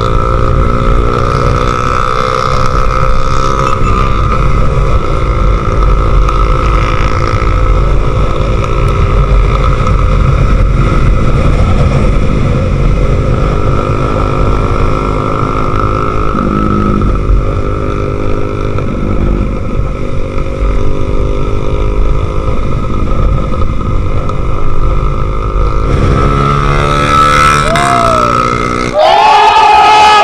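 Motorcycle engine running at a steady cruising pace with constant wind rumble on the microphone, the engine note gliding up and down a few times near the end. In the last second it cuts suddenly to a crowd shouting.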